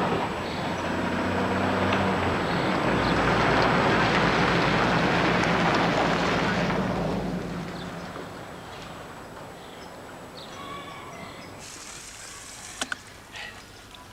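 Old utility truck driving along a dirt track, its engine running under a wash of tyre and gravel noise. The sound is loudest for the first several seconds, then fades away by about eight seconds in. Near the end comes a brief hiss of a garden hose spraying water.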